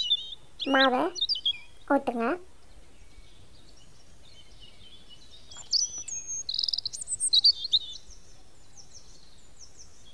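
Small birds chirping in short, high calls, a few near the start, then coming thick and fast from about five and a half to eight seconds in.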